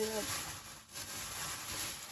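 Clear cellophane gift wrap rustling and crinkling as it is handled, a steady hissy rustle with a short lull a little under a second in.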